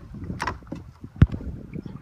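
Knocks from handling a landed snapper in a landing net on a boat deck: a sharp knock about half a second in, then a louder, deeper thump a little past a second, over a low background rumble.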